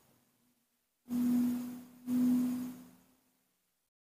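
Two short, steady low hums from a man, one after the other, each lasting about a second.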